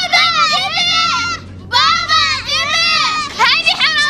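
Young girls talking in high-pitched, animated voices, with a short pause about halfway through.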